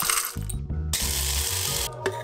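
Coffee grinder running for just under a second, a harsh grinding noise that starts about a second in and cuts off suddenly, over background music with a steady bass line. Just before it comes a brief rattle of coffee being scooped.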